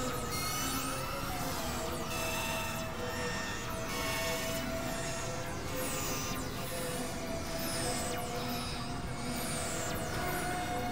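Experimental electronic drone music from synthesizers: steady held tones over a noisy low rumble, with high swooping sounds falling in pitch again and again, more often in the second half.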